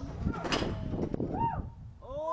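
A BMX bike and its rider falling from the top of a concrete full pipe during a failed loop attempt. The bike hits the concrete with a sharp crash about half a second in, with short yells around it.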